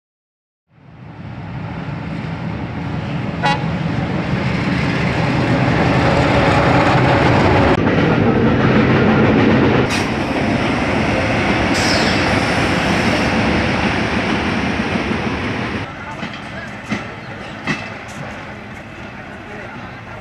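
Train passing close by: a dense rumble of locomotive and wheels on rails builds up and peaks mid-way, then eases off near the end with a few sharp clicks. A brief toot comes about three and a half seconds in.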